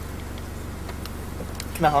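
Steady low rumble of a vehicle's engine idling, heard from inside the cab with the vehicle stopped.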